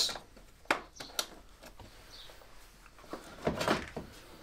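Plastic parts being handled as a headlight's wiring connector is plugged in and the headlamp unit fitted: two sharp clicks a little under a second in, then a cluster of knocks and scraping near the end.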